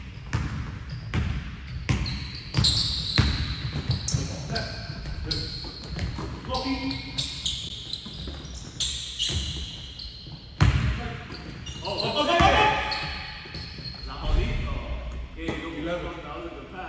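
Basketball bouncing on a hardwood gym floor in irregular dribbles and thuds, echoing in a large hall, with short high squeaks between them. The sharpest impact comes a little past the middle.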